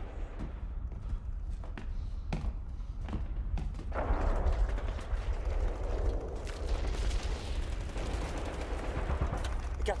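Battle noise: dense gunfire, machine-gun fire among it, over a deep steady rumble. The crackle grows louder and thicker about four seconds in.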